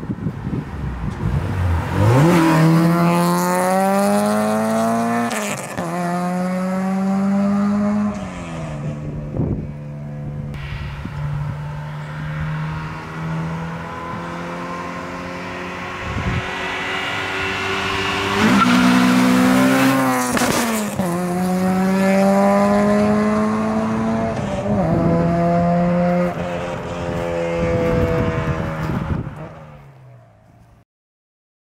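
A Honda H23A 2.3-litre four-cylinder in a 1992 Accord revs hard through the gears on full-throttle pulls. The pitch climbs, drops sharply at each upshift, then climbs again. The engine holds a steadier, lower note between two runs of shifts, and it fades out near the end.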